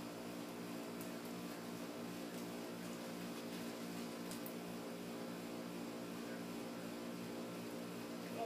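A steady mechanical hum, like a fan or air-conditioning unit, under a faint hiss, with a few faint ticks.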